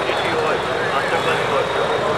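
A man speaking steadily into reporters' microphones, with a constant hum of street traffic behind him.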